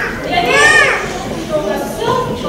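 A woman's voice crying out loudly in a high pitch that rises and then falls, about half a second in, with other voices around it.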